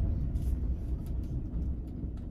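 Van engine and road noise heard from inside the cab as it rolls slowly: a steady low rumble.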